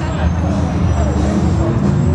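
Car engine running close by with a steady low rumble that grows a little louder at the start, with people talking in the background.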